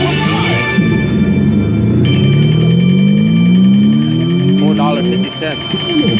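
Electronic slot machine sound effects: a series of tones rising steadily in pitch, the longest sweep running for about three seconds while a win is counted up on the meter.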